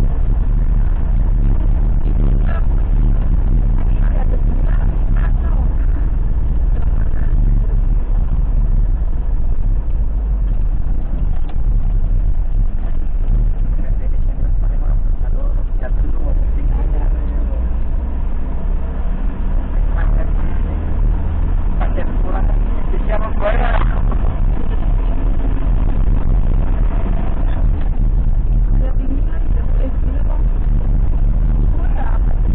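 Steady low rumble of a vehicle's engine and tyres heard from inside the cab while driving, with a brief higher-pitched sound a little after two-thirds of the way through.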